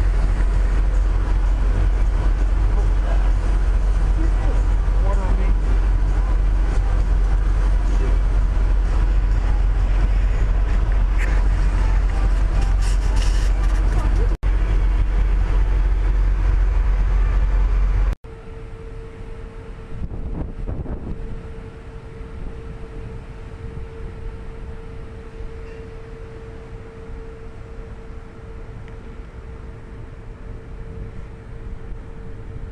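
Wind buffeting the microphone on an open ship deck, a heavy, steady low rumble. About eighteen seconds in it cuts suddenly to a much quieter steady hum with a faint constant tone.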